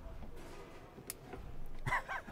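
Piezo igniter of a Dometic gas hob clicking as its control knob is pressed in: one sharp click about a second in, over a faint low rumble.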